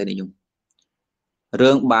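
A man speaking Khmer in a talk, breaking off for about a second of near silence before speaking again.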